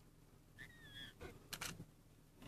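A faint, short high whistled call lasting about half a second, followed by a few sharp clicks.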